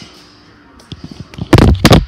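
Handling noise from a tablet being moved and set down face-up on a stone countertop: a few light clicks, then a run of loud knocks and rubbing right on its microphone in the last half second.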